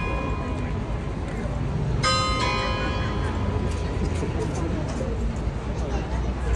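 A bell striking once about two seconds in and ringing on as it slowly fades, with the ring of an earlier stroke dying away at the start. A crowd murmurs underneath.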